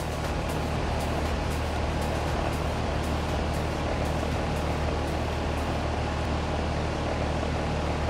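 Carrier central AC outdoor condenser unit running after a capacitor replacement, a steady low hum with a rushing noise, under faint background music with a light regular beat.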